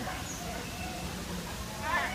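Birds calling over a background of people's voices, with a short, louder call near the end.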